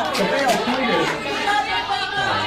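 Several voices in a hall talking and shouting over one another: an audience heckling a speaker.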